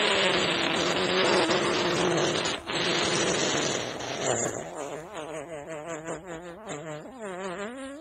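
A long fart noise, raspy and buzzing for about the first four seconds, then wobbling up and down in pitch, ending on a rising squeak.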